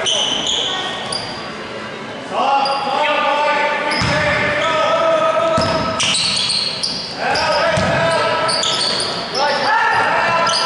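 A basketball being dribbled on a hardwood gym floor, with sneakers squeaking on the court and players' voices calling out, all echoing in the large gym.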